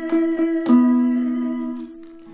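Jazz-toned guitar accompaniment from an Easy Guitar: a few plucked chord strokes, then a long held chord, with a sustained sung or hummed note over it, fading toward the end.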